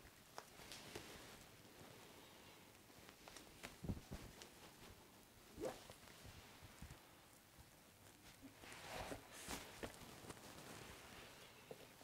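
Near silence, with a few faint scattered taps and short rustles of a knife and gloved hands trimming chocolate sponge cake on a cutting board. The clearest tap comes about four seconds in.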